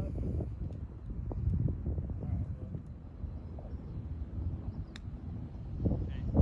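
Wind on the microphone, with faint voices and one sharp click about five seconds in.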